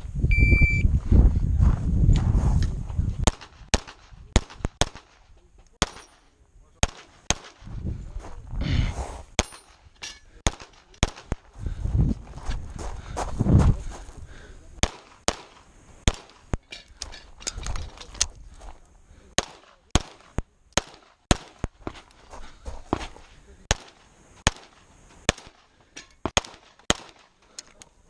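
A shot timer's start beep sounds once at the start, over a loud low rumble that lasts about three seconds. Then a semi-automatic pistol fires a long string of shots, roughly forty, mostly in quick pairs with short pauses between groups.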